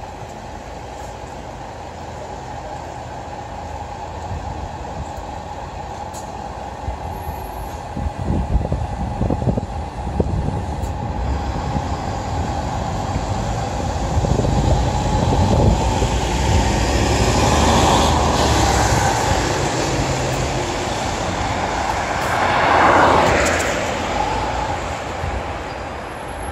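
City bus pulling away and driving past close by on a wet street. Its engine rumble builds and is loudest as it passes, with a further swell of road noise a few seconds before the end.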